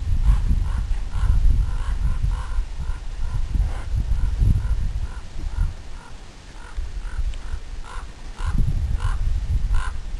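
A bird giving a long run of short, harsh calls, about two or three a second, over a low, uneven rumble.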